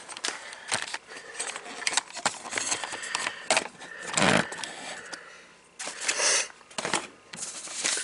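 Handling noises at a workbench: scattered clicks and knocks, scraping and rustling as things are set down and moved, with a louder rustle about four seconds in.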